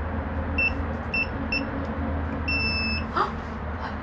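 Electronic door-entry code keypad beeping as a code is keyed in: three short key-press beeps, then one longer beep about half a second long.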